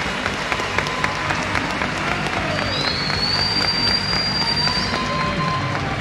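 Studio audience applauding steadily, with a long high whistle about halfway through.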